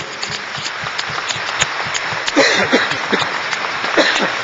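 Audience applauding steadily in a hall, with a brief voice heard about two and a half seconds in.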